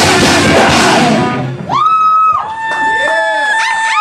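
A heavy metal band playing at full volume, with guitars, drums and shouted vocals, stops about a second and a half in. Audience members then whoop in long, high held cries that overlap, as the song ends.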